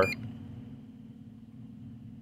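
A short high-pitched electronic beep right at the start, then a steady low electrical hum from the powered-up radio-control setup.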